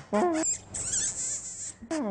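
Squeaky, wavering pitched sounds blown through a small object held to a man's lips. A short note comes near the start, then about a second of hissing with thin wavering squeaks, and a new held note begins just before the end.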